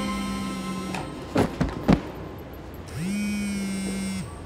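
A smartphone vibrating on a floor mat: two buzzes of just over a second each, about two seconds apart, each sliding up into a steady hum. Between the buzzes come three sharp knocks in quick succession.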